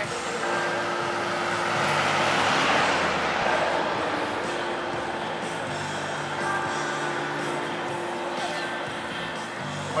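A motor vehicle passes close by on the road, its noise swelling to a peak a couple of seconds in and then fading, over faint music and crowd voices.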